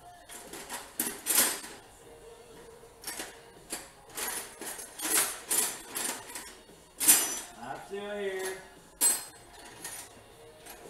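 Metal hand tools clinking and clattering in a toolbox as it is rummaged for a wrench: a string of sharp, irregular knocks and rattles. A short mumble of a voice about eight seconds in.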